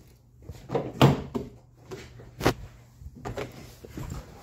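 Several knocks and clunks of a car door and cabin being handled as someone climbs into the driver's seat, the loudest about a second in and another about two and a half seconds in, over a faint steady hum.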